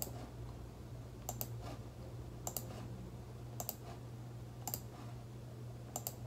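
Computer mouse clicking: about six short, sharp clicks roughly a second apart, the first two close together.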